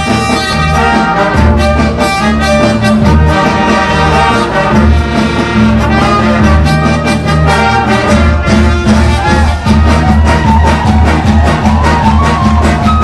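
Live band playing an instrumental passage led by a brass section of trumpets, trombones and sousaphone, over bass and drums.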